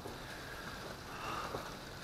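Steady rain falling on a greenhouse's glass panes and roof, heard from inside as an even hiss.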